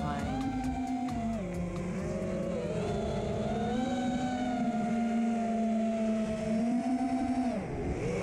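FPV quadcopter's T-Motor F40 Pro 2400KV brushless motors whining with the throttle. The pitch holds, sags and climbs again, then dips sharply near the end and rises as the throttle is punched.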